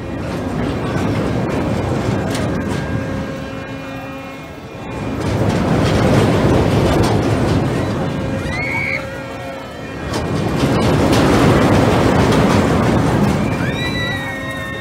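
Fireball looping pendulum ride: its train of seats swings back and forth along the loop track, a rumble of wheels on track that swells and fades about every five seconds. Riders give a couple of short high screams near the middle and the end.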